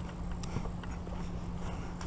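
Footsteps on a dirt path strewn with dry leaves, with small irregular clicks and knocks from carried gear, over a steady low hum.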